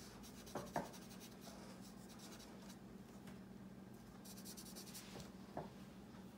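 Felt-tip marker rubbing on paper in small strokes, colouring in dots, faint and scratchy, with a brighter run of strokes about four seconds in. A faint steady low hum lies underneath.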